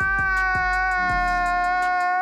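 A man's long, high-pitched crying wail held on one note, over a music track with a steady beat and bass.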